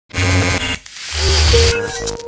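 Electronic logo-intro sound effect: two loud swelling whooshes with a deep rumble underneath, then a steady ringing tone that sets in near the end and holds.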